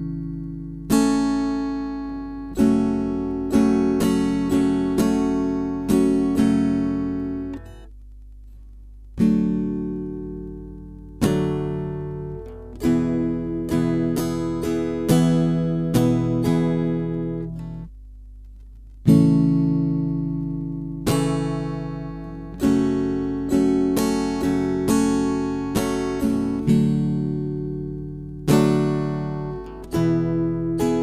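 Acoustic guitar strummed in a down, down, up, up-down-up-down, down-up pattern, each phrase opening with a strong chord that rings and fades. The strumming breaks off twice for about a second and a half, about eight and eighteen seconds in, then picks up again.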